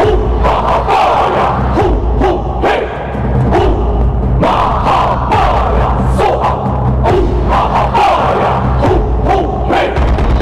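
Many voices chanting a Buddhist mantra together over music, with a steady low drone and repeated percussion strokes throughout.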